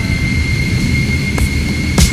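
Jet airliner engines heard from inside the cabin: a steady low rumble with a thin, steady high whine over it.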